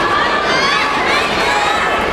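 Crowd of spectators, many of them young, shouting and cheering at once, voices overlapping continuously.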